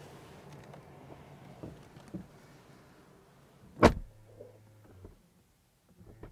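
A Mercedes-Benz GLE's driver's door pulled shut from inside: one solid thud about four seconds in, after a few soft knocks of someone settling into the seat.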